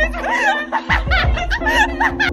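Two women giggling and laughing together, high and wavering, over background music with a steady low bass.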